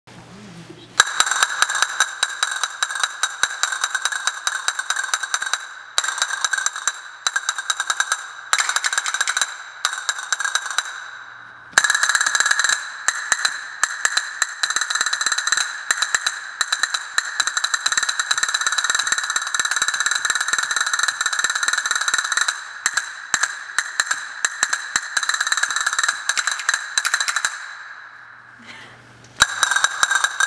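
Castanets played in fast, dense rolls of clicks. A few short breaks come in the first twelve seconds, and after that the playing runs almost without a pause.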